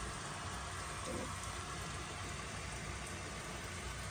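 Steady hiss of water from a garden hose running over the roof, heard muffled from inside the attic below during a leak test around the skylight.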